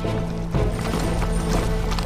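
Hoofbeats of many cavalry horses riding forward together over a dramatic music score with steady held tones.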